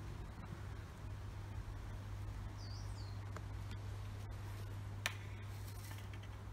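Steady low hum of a running hot tub's pump. A bird chirps briefly about three seconds in, and there is a single sharp click near the end.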